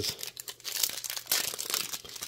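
Foil trading-card pack wrapper being crinkled and torn open by hand, a run of irregular crackles.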